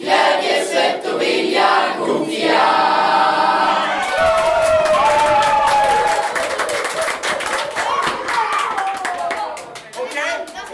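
A group of young boys singing a team chant together. From about four seconds in it turns into shouting and cheering over rapid hand clapping.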